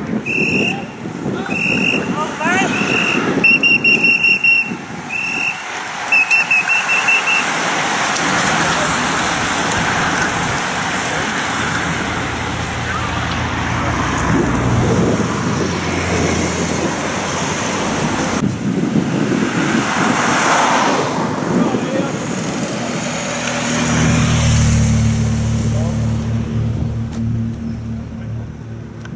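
A bike-race convoy passing on a road: a string of short, high-pitched toots from a whistle or horn in the first seven seconds, then a steady rush of traffic and tyres, with a vehicle engine growing louder near the end.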